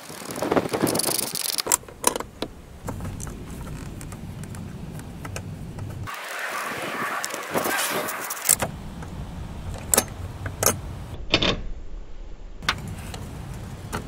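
Socket on a long extension bar clinking and clicking against metal as nuts are run onto studs beside the plastic coolant expansion tank, with a stretch of scraping and rustling handling in the middle.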